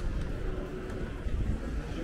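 Street ambience dominated by a steady low rumble of wind buffeting the microphone.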